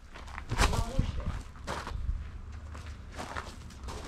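Footsteps on grass and dirt, a handful of uneven steps.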